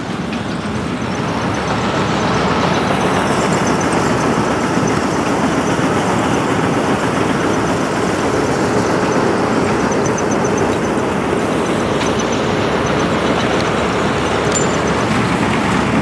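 John Deere combine harvester cutting rice: a loud, steady mechanical din of engine and threshing machinery, growing slightly louder about two seconds in.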